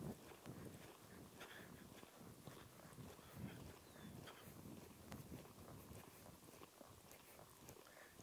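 Faint hoofbeats of a horse loping on soft arena dirt, heard as soft irregular thuds at a low level.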